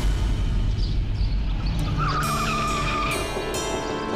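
Dramatic TV-serial background score: a low drum rumble in the first half, then from about halfway a wavering melodic line over sustained chords.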